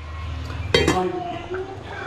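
A single metallic clink of steel kitchenware about three quarters of a second in, ringing briefly before it fades.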